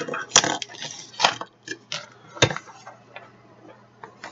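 Pages of a ring-bound journal handled and turned over its metal binder rings: a handful of sharp metallic clicks, the loudest about two and a half seconds in, with paper rustling. It grows quieter near the end.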